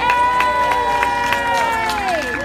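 Audience cheering and clapping: several voices hold long cheers, one falling in pitch near the end, over a steady patter of hand claps.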